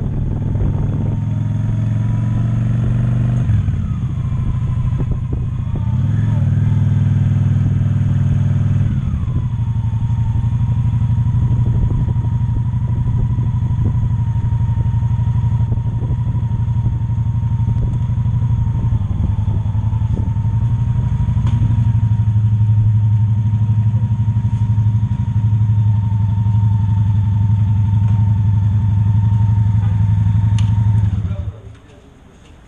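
Cruiser motorcycle engine running at low speed. Its pitch rises and falls a few times in the first ten seconds, then it holds a steady idle.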